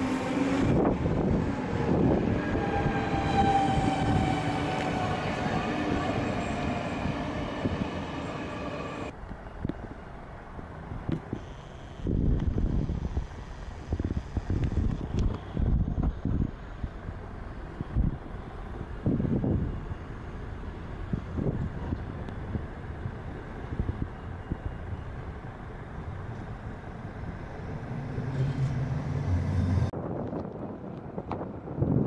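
Electric train running at a railway station for the first nine seconds, its motor whine of several tones drifting slightly down in pitch. Then, after a sudden change, quieter street ambience with wind gusting against the microphone.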